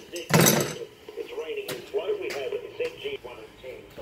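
A short, loud clatter of metal utility-cart parts being handled and picked up, followed about a second later by a single sharp knock, over talk in the background.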